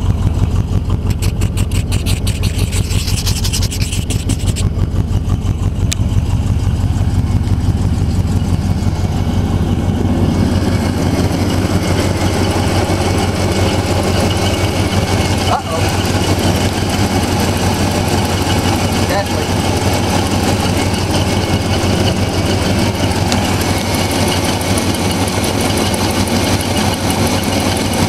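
1985 Oldsmobile Cutlass engine idling steadily, still cold from a start at about 10 degrees, with a fast even pulse. From about ten seconds in it is heard close up at the open hood and sounds fuller.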